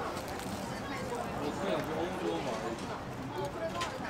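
Indistinct background voices over a steady street hum, with a few sharp clicks, the clearest near the end.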